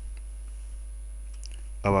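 Steady low electrical hum on a desktop recording with a few faint computer keyboard clicks as the cursor is tabbed in; a man's voice starts right at the end.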